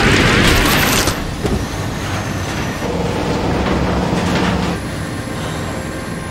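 Tractor-trailer truck driving at speed on a highway: a loud, steady rumble of tyres on the road and engine drone. It is loudest in the first second and eases off gradually.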